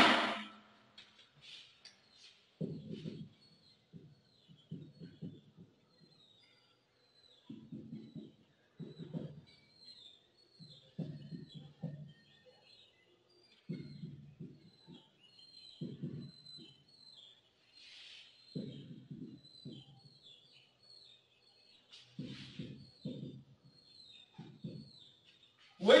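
Whiteboard marker writing on a whiteboard: short scratchy strokes every second or two, with small high squeaks as the tip drags across the board. A single sharp knock opens it and is the loudest sound.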